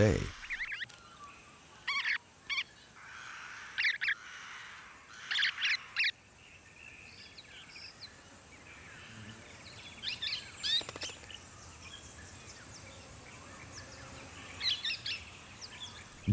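Golden-shouldered parrots giving short chirping calls in scattered bursts, one or two notes at a time, over a steady faint high hiss.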